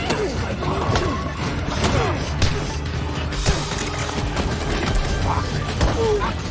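Animated fight-scene soundtrack: music under a run of sharp hits and crashes, with short gliding cries from the small coconut-armoured creatures.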